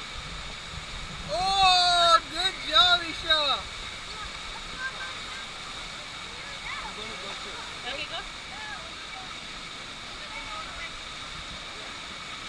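Steady rush of water pumped over the surface of a standing-wave surf pool. A high-pitched voice calls out loudly about one and a half to three and a half seconds in, with fainter voices later.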